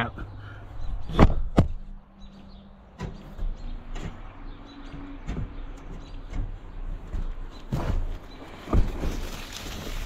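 Camera handling and climbing on a steel gravity wagon: scattered knocks and clunks, the two sharpest about a second in, with weaker ones through the rest over a low rumble of handling noise.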